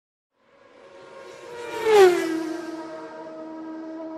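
Intro sound effect: a pitched whoosh that swells, peaks about two seconds in with a sharp drop in pitch like a vehicle passing, then settles into a steady held tone.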